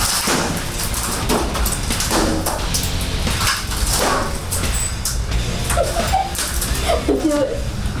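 Metal bat smashing repeatedly into furniture and debris in a rage room: a rapid series of sharp hits and cracks, about two a second.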